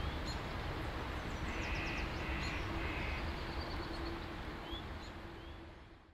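Outdoor ambience with birds calling: three short calls in a row about a second and a half in and scattered small chirps, over a low steady rumble, fading out at the end.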